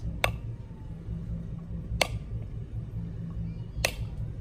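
Back of a chef's knife striking a whole brown coconut along its seam to crack the shell: three sharp knocks about two seconds apart, over a steady low rumble.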